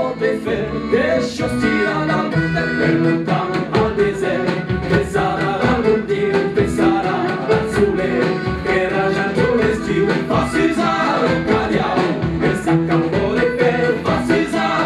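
A live traditional band playing: several voices singing together in polyphony over oud, accordion and fiddle, with a small stick drum and a large bass drum beating a steady rhythm.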